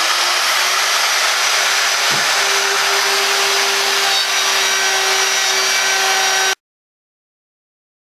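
Electric router running at full speed with a dovetailing bit, hogging out wood from the dovetail neck joint of an upright bass: a steady high whine over the noise of the cut. The sound cuts off suddenly about six and a half seconds in.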